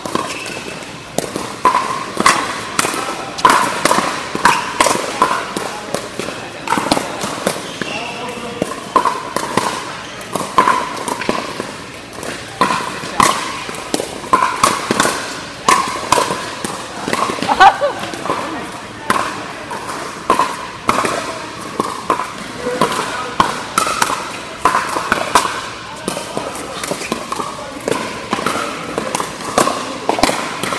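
Pickleball paddles striking a plastic pickleball in a fast rally: sharp pops in irregular quick succession, several a second at times, with short gaps between points.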